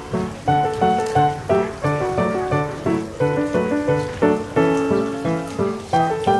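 Background piano music, with notes struck in an even rhythm about twice a second.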